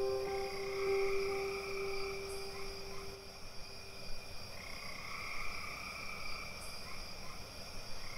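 Steady chirping and trilling night ambience of frogs and insects, a sound-effect bed at the end of the track. A last held note of the music fades out under it about halfway through.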